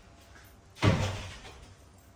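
A door bangs once, about a second in: a single heavy thud that dies away in the room within half a second.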